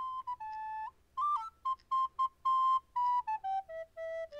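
A solo flute-like melody played one note at a time in short, separate notes, staying around one pitch and then stepping down in a falling run near the end.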